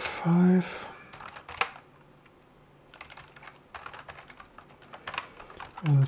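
Typing on a computer keyboard: irregular keystroke clicks, with a brief lull about two seconds in.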